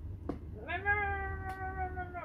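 A baby's drawn-out whining vocalization: one steady, slightly falling note starting under a second in and lasting about a second and a half.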